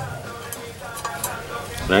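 Tip of a thin screwdriver scraping and picking hard carbon buildup out of a port in an aluminium intake manifold, a faint scratchy sound with a few light clicks.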